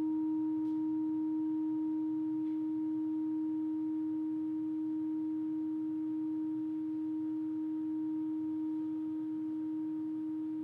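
Clarinet holding one long, steady note, nearly pure in tone, with no change in pitch or loudness.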